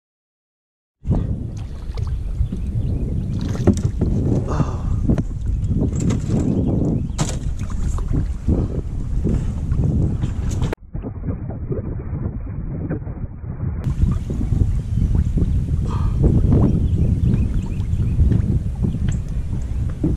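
Wind buffeting the microphone over the water noise of a small paddle boat drifting on a lake, with scattered knocks and rustles. The sound starts abruptly about a second in and drops out briefly near the middle, then stays muffled for a few seconds.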